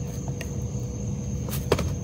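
A few light clicks and knocks as a plastic pop-it fidget toy is set down on a cardboard box, the sharpest near the end, over a steady low background rumble.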